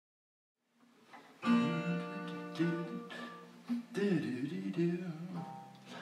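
Acoustic guitar strummed, starting about a second and a half in, with a man's wordless vocal joining about four seconds in.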